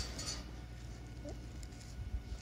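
Faint pricking of cling film with a wooden skewer, over a steady low background hum, with one short faint rising squeak about a second in.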